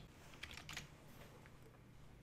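Faint typing on a computer keyboard: a short run of keystrokes in the first second.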